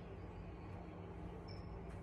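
Quiet room tone: a low steady hum with faint background noise, and a faint brief high blip about one and a half seconds in.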